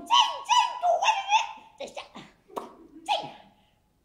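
A woman's high voice making a run of short, wordless cries that each fall in pitch, several a second at first, then sparser and tailing off near the end.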